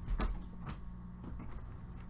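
Handling noise as a laptop is moved in front of the camera: a low rumble with a faint knock just after the start and another faint knock a little later. Both sit over a steady low electrical hum.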